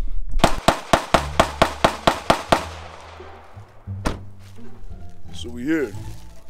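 A rapid string of about ten sharp cracks, roughly five a second, each with a short ringing tail, followed by background music with a deep, steady bass line. One more single crack comes about four seconds in.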